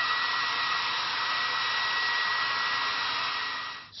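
Hand-held hair dryer blowing at a steady speed: a loud rush of air with a high steady motor whine over it. It switches off near the end.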